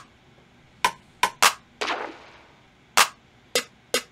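A string of sharp, irregularly spaced clicks, about seven in four seconds, one of them with a short fading tail.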